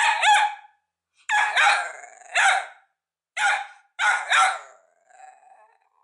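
Bedlington terrier puppy barking: a run of about eight high-pitched barks, several in quick pairs, with a fainter yip near the end.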